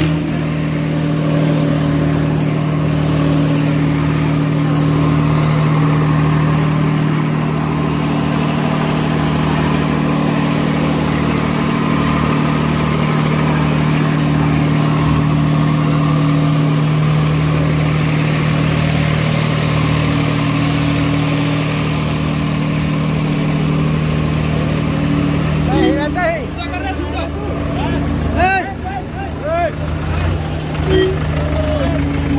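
Diesel tractor engines running at steady high revs under load during a tug-of-war, a constant hum that holds for most of the time. Near the end the engine note drops back and voices shout over it.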